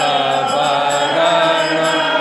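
Devotional aarti chanting with music, the voices holding long, steady notes that shift pitch about once a second.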